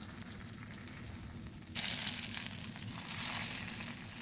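Paniyaram batter frying in the cavities of a metal paniyaram pan, sizzling steadily as the balls are turned with a skewer. The sizzle grows louder and brighter a little under two seconds in.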